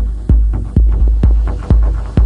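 Electronic dance music from a techno DJ mix: a steady four-on-the-floor kick drum, about two beats a second, over deep sub-bass and layered synth textures.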